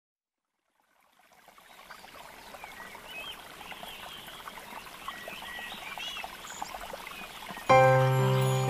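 Nature ambience of trickling water with small bird chirps, fading in after a second of silence. Near the end, sustained music chords come in suddenly, much louder.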